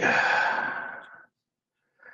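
A man sighing: one long breathy exhale that fades out after about a second.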